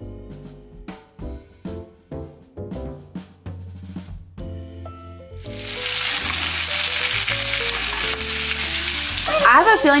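Piano-led background music for about five seconds. Then a steak sizzles loudly in foaming butter in a cast-iron skillet, with the music still faint underneath.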